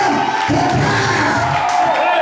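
A church congregation shouting and calling out in praise together over loud music. The deeper part of the sound drops away near the end.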